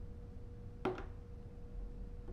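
A single short tap or knock a little under a second in, over a faint steady hum.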